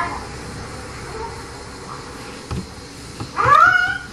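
A cat meowing once near the end, a single call rising in pitch.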